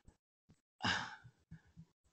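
A man's single breath, like a sigh, about a second in and lasting about half a second, followed by a couple of faint clicks.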